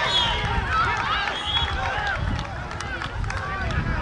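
Scattered shouts and calls from players and spectators around an outdoor football pitch, with a steady low rumble underneath.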